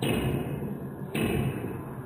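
Table-tennis ball hits in slowed-down audio: two deep thuds about a second apart, each drawn out into a long fading rumble instead of a sharp click.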